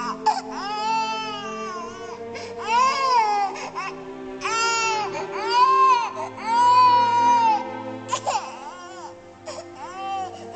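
Baby crying in about five long wails of roughly a second each, each rising and then falling in pitch, over steady background music.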